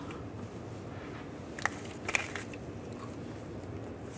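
Two small clicks and light crackling as the power steering pressure and return hose fittings and their corrugated plastic sleeves are handled and lined up against the steering rack, over a low steady background hiss.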